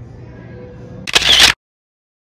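Faint steady hum of an indoor mall, then about a second in a short, very loud camera-shutter sound effect, after which the audio cuts to silence.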